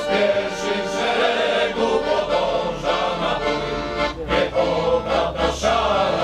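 Male choir singing a Polish patriotic song in sustained chords.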